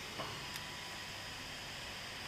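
Quiet steady hiss of room tone, with a faint click about half a second in.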